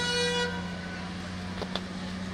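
A truck horn holding one steady note that cuts off about half a second in, over a truck engine idling with a steady low hum.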